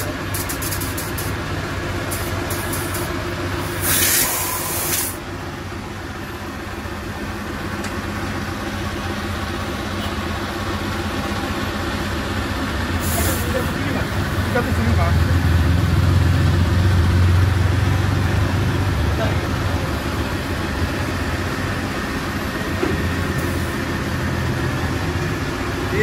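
A tyre inflator gauge on a motorcycle tyre valve releasing short bursts of compressed-air hiss while the pressure is set to 33 psi: one loud burst about four seconds in and a shorter one near the middle, with a few light clicks at the start. A steady machine hum runs underneath and grows louder in the second half.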